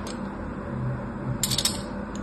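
A thin craft-knife blade cutting into a dry bar of soap: one crisp click near the start, then a quick cluster of crackling clicks about one and a half seconds in.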